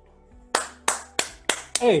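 One person clapping hands in applause: five claps about a third of a second apart, starting about half a second in.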